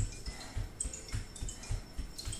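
Bare feet thudding on an exercise mat while jogging in place, in an even rhythm of about three footfalls a second. Short, faint high-pitched tinkling notes come and go above the footfalls.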